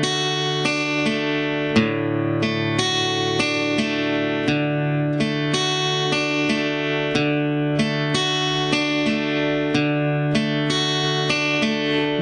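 Acoustic guitar arpeggiating a D major chord: single strings picked one at a time, open D and G with downstrokes, then high E, B and G with upstrokes, repeated over and over. The notes come slowly and evenly, about two to three a second, and ring into each other.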